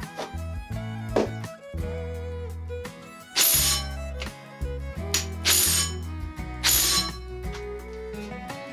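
Background music with a steady bass line, over which come light metallic clinks and three short, loud rasping bursts about a second and a half apart, starting near the middle.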